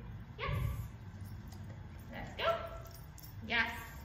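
A dog giving three short, high-pitched yips: one near the start, one about two seconds in and one near the end.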